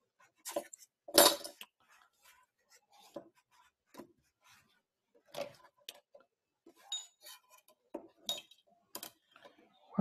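Drafting tools handled on a drawing board: a steel ruler and acrylic drafting triangles lifted, slid and set down on the paper, giving scattered clicks and light knocks, the loudest about a second in, with a couple of faint metallic clinks later on.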